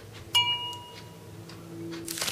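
A single light clink about a third of a second in, a hard object struck and ringing briefly with a few clear high tones as it fades.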